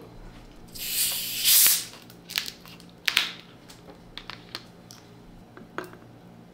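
A plastic 2-litre Coca-Cola bottle twisted open: a gassy hiss of escaping carbonation lasting about a second, followed by a few sharp clicks and knocks as the cap and glass are handled.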